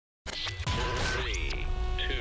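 Electronic intro sting: steady synthesized beeps, warbling pitch sweeps and a sharp click over a steady low hum, starting abruptly after a moment of silence.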